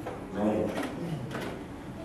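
A man's voice speaking into a handheld microphone, the words not made out.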